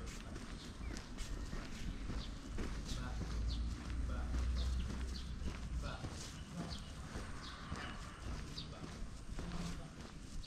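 Footsteps on a stone-paved street at a steady walking pace, about two steps a second, with a low rumble that swells in the middle.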